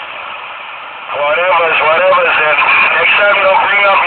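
A person talking, starting about a second in, after a short lull with only steady background noise.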